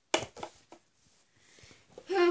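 A few brief rustles and clicks of handling close to the microphone in the first half second, then quiet room tone.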